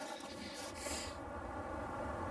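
Mountain wind rumbling on the microphone, with a high hiss that fades out about a second in.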